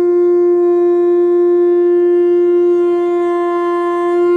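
One long, steady note blown on a horn, held at a single pitch without wavering.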